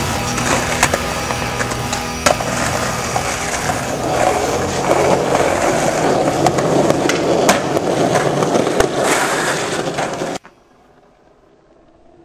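Skateboard wheels rolling on concrete with several sharp clacks of the board, under music that is plainest in the first couple of seconds. The sound cuts off suddenly near the end, leaving a low hiss.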